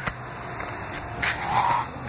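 Footsteps and scuffing through dry leaf litter and twigs on a phone being carried at a run, with a few irregular crunches and a steady low hum underneath.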